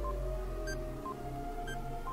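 Quiz-show countdown timer music: a low sustained drone with short electronic beeps ticking off the seconds, a high ping and a lower blip each second.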